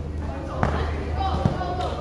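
A basketball bouncing on the court, two sharp bounces about a second apart, with players' voices calling in the background.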